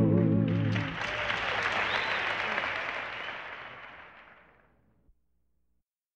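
A gospel song's last held note ends. Audience applause follows and fades out over about four seconds into silence.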